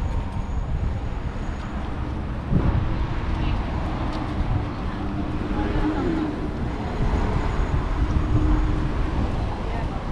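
Street ambience on a seafront promenade: indistinct voices of passers-by over a low, constant rumble of road traffic and wind on the microphone.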